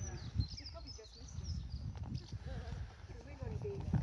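Indistinct chatter of a small group of people outdoors, over a low rumble of microphone handling as a phone camera is swung around.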